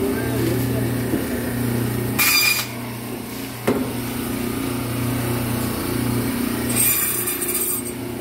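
Electric meat-and-bone band saw running, its motor giving a steady hum. There is a short harsh burst about two seconds in and a single sharp knock about a second later. Near the end a longer harsh burst comes as the blade cuts into a whole rohu fish.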